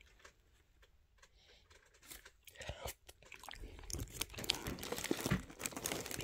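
Chip paper crinkling and battered haddock being pulled apart by hand, heard as a scatter of small crackles. They begin after about two near-silent seconds and grow busier in the second half.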